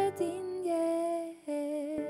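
A woman singing a slow worship song with piano accompaniment, holding long notes that change pitch a few times, her voice wavering slightly on each.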